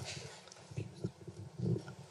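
Handling noise from a handheld microphone as it is passed from one person to another: faint, irregular low knocks and rubbing on the mic body.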